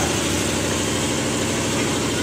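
A steady low engine drone, like a motor idling, with no change in pitch.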